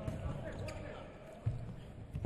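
Live handball play in an empty arena: players' shouts and calls, with a handball thudding on the court floor, the clearest thud about a second and a half in.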